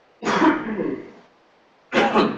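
A man coughing and clearing his throat: two harsh bursts, the second about a second and a half after the first.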